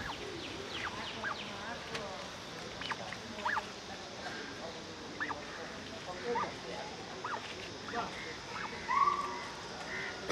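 Outdoor background with indistinct voices and scattered short, high chirping calls, the loudest about nine seconds in.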